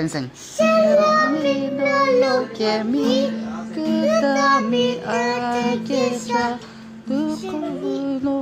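A song sung in a child's voice over music, the melody moving in short sung phrases above a steady held backing note.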